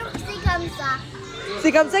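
Children's voices chattering and calling out, with a woman saying a couple of words near the end.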